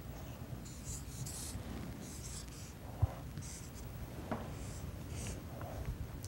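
Marker pen writing digits on a paper flip chart: a series of short, faint scratchy strokes, with one soft knock about three seconds in.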